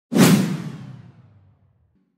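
A whoosh sound effect on the end-card transition: one sudden swell that fades away over about a second and a half.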